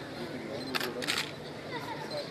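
Two quick camera shutter clicks about a second in, over a low murmur of crowd voices.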